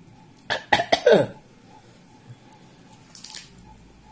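A woman coughing three times in quick succession about half a second in, the last cough voiced and falling in pitch.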